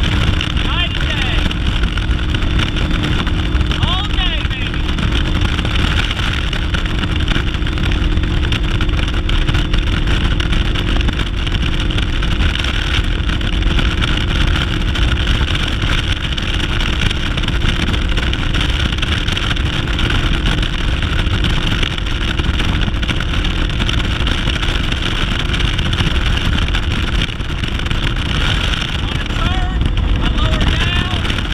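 Yamaha 250 SHO V6 outboard running at wide-open throttle, pushing a bass boat at about 77 mph, with heavy wind rushing over the microphone. The drone and wind noise hold steady throughout.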